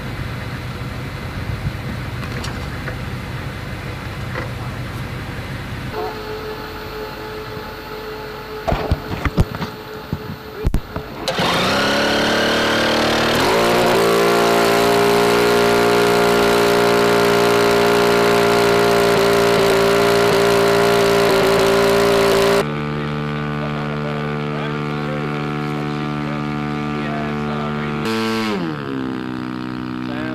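The rotary engine of an RQ-7 Shadow unmanned aircraft being started: a few sharp clicks, then the engine catches about eleven seconds in, climbs in pitch and runs loud and steady. It then drops in level and its pitch falls near the end as it throttles back.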